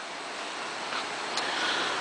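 Steady hiss of background noise, rising a little, with one faint click about one and a half seconds in as the SUV's driver door is unlatched and swung open.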